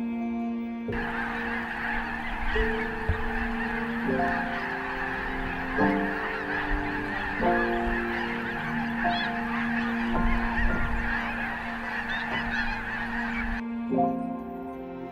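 A huge flock of migrating geese all calling at once, a dense din of overlapping honks. It starts abruptly about a second in and stops abruptly just before the end, with slow background music held underneath.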